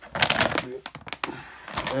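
Crinkling and rustling of a large plastic supplement bag and a cardboard box being handled, with a couple of sharp clicks about a second in.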